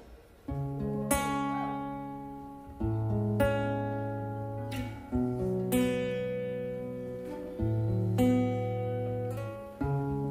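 Acoustic guitar playing the instrumental opening of a song: strummed chords left to ring, starting about half a second in and changing about every two and a half seconds.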